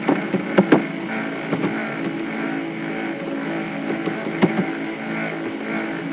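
A steady mechanical drone with a few scattered sharp clicks.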